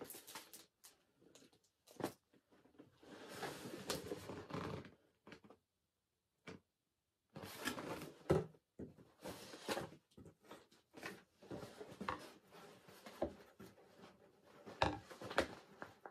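Paper and cardboard rustling and crinkling in irregular bursts with small knocks, as a book in a paper sleeve and paper-wrapped gifts are handled and lifted out of a cardboard box, with a brief near-silent pause in the middle.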